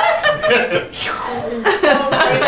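People chuckling and laughing.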